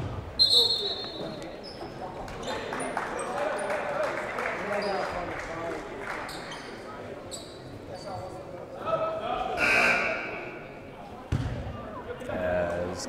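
Gymnasium sound during a stoppage in a basketball game: scattered voices of players and spectators echoing in the hall, short squeaks of sneakers on the hardwood court, and a few bounces of the basketball. About ten seconds in there is a louder burst of voices.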